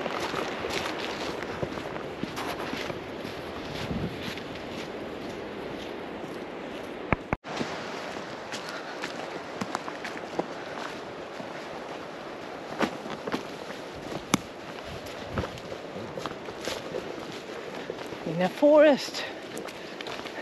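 Footsteps walking on a forest path of pine needles and soil, with wind noise on the microphone. A short burst of voice comes near the end.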